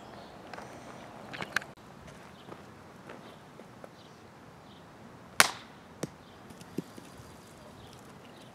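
A wooden croquet mallet strikes a croquet ball once with a sharp crack about five seconds in, followed by two fainter short knocks over the next second and a half.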